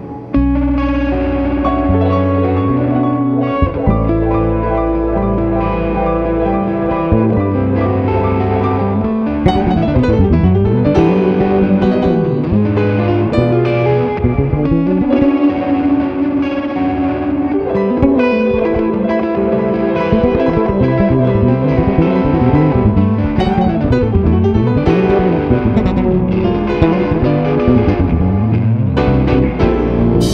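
Playback of a jazz fusion band mix: amp-miked electric guitar with a bit of drive, playing together with bass guitar and keys, with sliding low notes.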